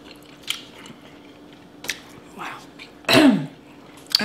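Close-up eating sounds of seafood being chewed, with a few short sharp mouth or shell clicks. About three seconds in comes a brief vocal sound that falls in pitch, like a hummed "mm" or a throat clear. A faint steady hum runs underneath.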